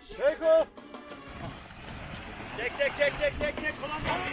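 Wind rushing over the microphone during a paraglider launch. Voices call out briefly near the start, and a quick string of short shouted syllables comes about halfway through.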